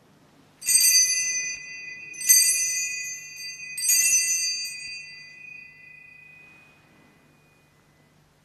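Sanctus bells (altar bells) rung three times, about a second and a half apart, marking the elevation of the chalice at the consecration. Each ring starts sharply, and the last one fades out over a few seconds.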